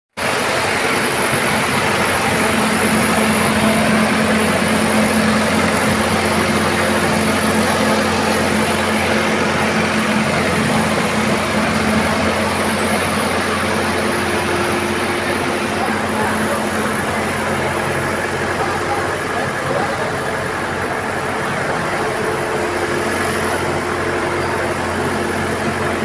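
An engine running steadily at a constant pitch, with no revving.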